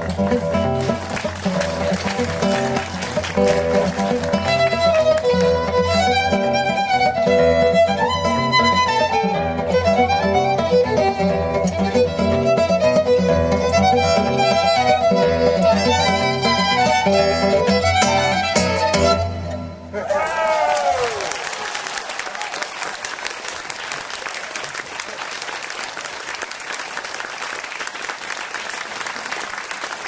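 Two violins playing a jazz melody over acoustic guitar accompaniment. The piece ends about twenty seconds in with a falling slide, and audience applause follows.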